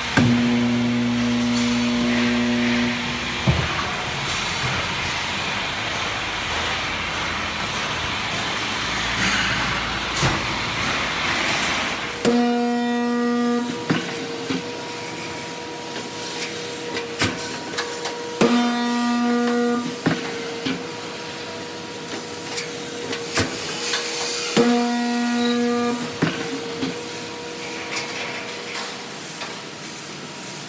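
Steel grating welding machine working through its cycle: an electrical hum with overtones sounds with each weld, in bursts of a second or so about every six seconds, with knocks and clanks of the press and steel bars between them. A steady rushing machine noise fills the first dozen seconds.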